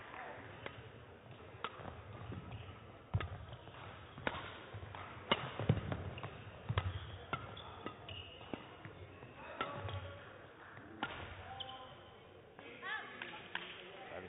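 Badminton rally: sharp racket strikes on the shuttlecock, about one a second, with short squeaks of shoes on the court near the end.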